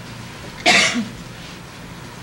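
A single short, loud cough about half a second in.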